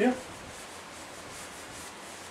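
An eraser rubbing across a whiteboard, wiping off marker writing.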